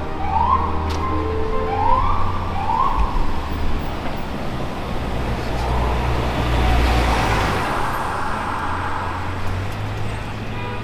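Emergency vehicle siren giving short rising whoops, four of them in the first three seconds, over steady city traffic rumble. A bus passes close about halfway through, its noise swelling to a peak near seven seconds.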